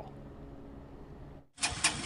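Faint steady background hum at first. After a brief dropout about a second and a half in, a motorcycle engine comes in running loudly, with a few sharp knocks as it starts.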